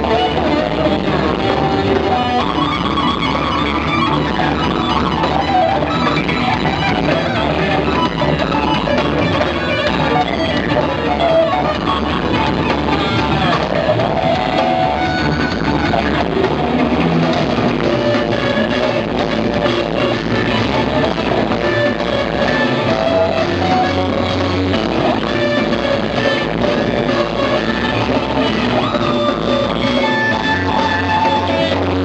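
Electric guitar playing over a rock backing track with drums, loud and continuous.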